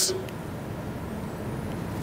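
A steady low background hum with no distinct clicks or knocks, the tail of a spoken word just at the start.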